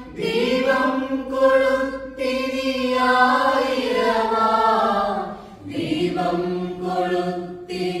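A mixed choir of men and women singing a devotional group song unaccompanied, in held phrases with brief breaths between them every two to three seconds.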